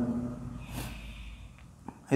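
A man's short breath through the nose, like a quick sniff, about a second in, and a small click just before he speaks again; otherwise quiet room noise.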